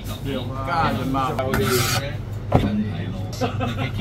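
A cleaver strikes once through marinated goose onto a thick wooden chopping block, about two and a half seconds in, a sharp knock. A steady low hum and a voice run underneath.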